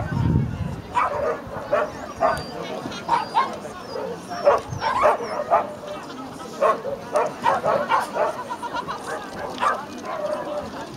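A dog barking again and again in short, quick barks, about two a second with a brief lull near the middle, while it runs a jump course in an agility run.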